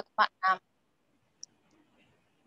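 A woman's voice ends a sentence with two short syllables in the first half-second, followed by near silence with one faint tick about one and a half seconds in.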